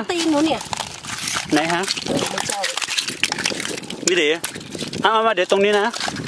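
Small hand rake scraping and prying among oyster shells: a dense run of small clicks and crunches between short bursts of talk.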